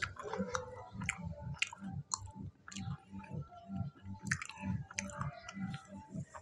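A person chewing a mouthful of fried pakora in steady rhythm, about three chews a second, with small wet clicks of the mouth.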